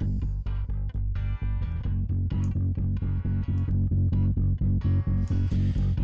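Electric bass guitar, recorded direct and run through the Airwindows MidAmp amp-sim plugin blended with the dry signal, its highs rolled far off for a deep, amp-like tone. It plays a fast, even stream of thumbed notes with heavy low end.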